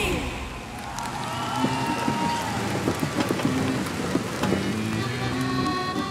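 Audience applauding as a song ends. Music starts up again near the end.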